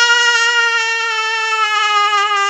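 A man singing unaccompanied, holding one long, loud note that sags slightly in pitch.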